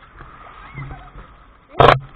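Sea water sloshing around a camera held at the surface, with a short loud splash against it near the end.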